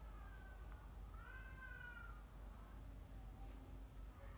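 Faint cat meowing: a short meow at the start, then a longer one about a second in that rises and falls in pitch.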